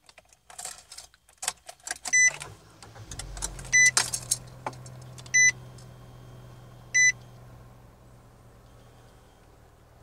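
Keys jangling, then the 2016 Nissan Versa Note's 1.6-litre four-cylinder engine starting about three seconds in and settling into a steady idle. A warning chime beeps four times, about a second and a half apart.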